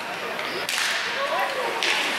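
Hockey skate blades scraping on rink ice as players break from a faceoff: two long scrapes, the first starting about two-thirds of a second in and lasting about a second, the second near the end, with faint voices behind.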